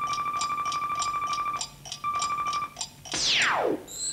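Electronic game-show sound effect for the prize-board cursor: a steady high beep with quick ticks about six times a second, which breaks off briefly and then stops. Near the end comes a fast downward-sweeping zap.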